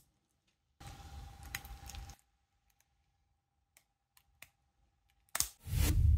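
Spudger prying an iPhone battery loose from its alcohol-softened adhesive: about a second and a half of scraping and crackle, then a few faint ticks. Near the end comes a sudden loud whoosh that swells into a deep boom.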